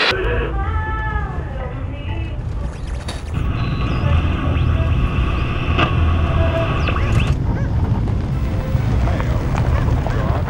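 Steady low rumble of a car engine heard from inside the car, with a car radio being tuned over it: whistling pitch sweeps in the first two seconds, then steady radio tones and static from about three seconds in until about seven seconds.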